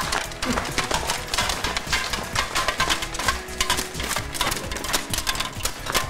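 Background music over rapid, irregular metallic clinking and rattling from the plates of a steel suit of armour as its wearer moves.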